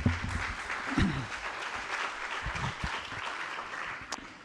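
Audience applauding, a steady clatter of clapping that fades out near the end.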